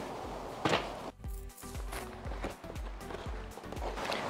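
Wind gusting on a clip-on microphone as a low, uneven rumble, with a few light knocks from handling a cardboard shipping box.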